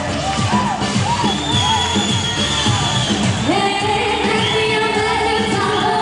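Loud live Asian pop music with a singer, played through a concert sound system.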